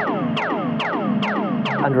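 Synthesizer music fed through a tape-style delay plug-in at full feedback. As the tempo-synced delay time is dragged to a new value, its echoes sweep down in pitch over and over, about two to three times a second: the dubby pitch-bending sound of a tape delay changing its time.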